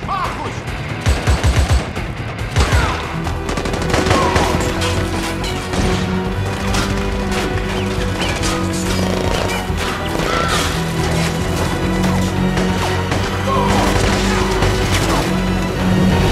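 Movie gunfight sound: repeated gunfire, with several rapid bursts and bullets striking metal, over a tense film score that holds steady low notes. The loudest cluster of shots comes about one to two seconds in.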